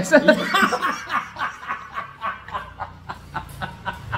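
Two men laughing together. The laughter starts full and then goes on as a run of short, repeated bursts.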